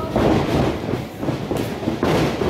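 Wrestlers' feet pounding across a wrestling ring, the canvas-covered boards rumbling and clattering under them in quick, irregular knocks.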